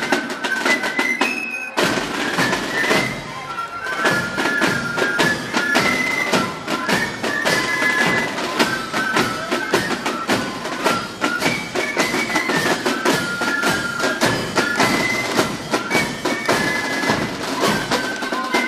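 Marching corps of drums playing a march: flutes carry a high, stepping melody over rapid side-drum beats.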